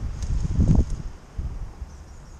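Wind rumbling on the camera's microphone, with thumps from footsteps and the camera being moved. It is loudest just under a second in and quieter from about a second on.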